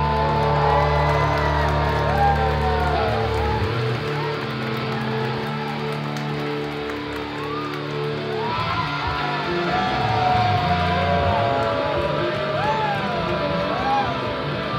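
A live rock band playing: electric guitar and bass hold long, sustained notes while the guitar bends and slides pitches up and down. The low notes change after about eight and a half seconds.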